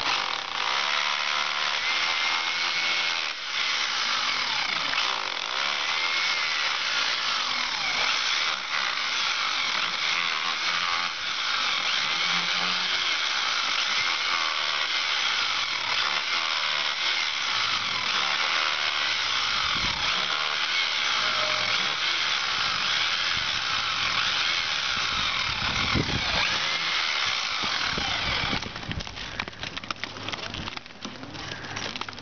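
Electric rotary hammer with a chisel bit running steadily as it chips out old mortar and broken brick from a chimney's brick courses, stopping shortly before the end.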